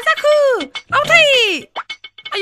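A woman's high wailing cries: two drawn-out cries, each falling in pitch, about a second apart.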